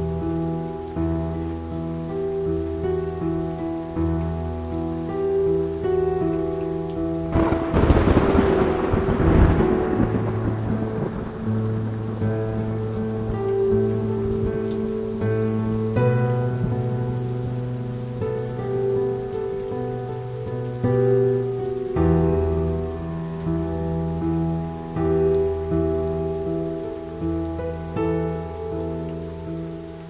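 Slow, sustained ambient music with a steady rain sound laid under it. About eight seconds in, a loud clap of thunder breaks in and rumbles away over two or three seconds.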